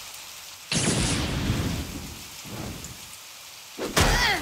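Cartoon sound effect of steady rain pouring down, with a loud rumble of thunder breaking in under a second in and a weaker second rumble around the middle.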